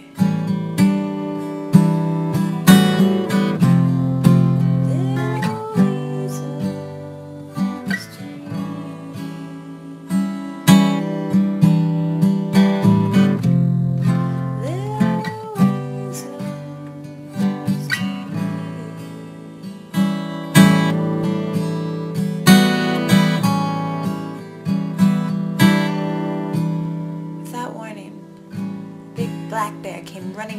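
Acoustic guitar music, plucked and strummed, with a note sliding upward twice along the way.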